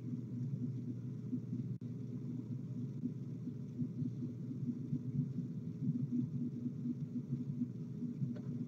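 Steady low hum and rumble from a participant's open microphone heard over an online voice-chat room, with a brief dropout about two seconds in.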